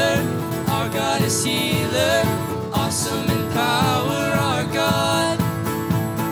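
Live worship song: a strummed acoustic guitar accompanying singing voices.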